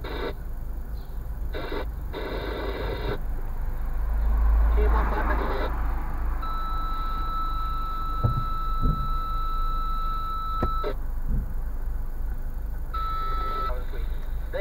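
Low rumble of a car's engine and road noise inside the cabin while driving slowly. A steady high electronic tone comes on about six seconds in and holds for about four seconds, then sounds again briefly near the end.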